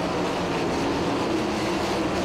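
410 sprint cars' methanol-burning V8 engines running at speed around a dirt oval, heard as a steady drone with a faint held tone.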